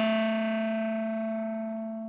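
Bass clarinet holding one long, low, steady note that starts loud and slowly fades away.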